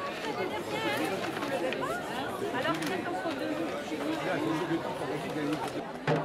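Crowd chatter: many voices talking over one another at once, at a steady level.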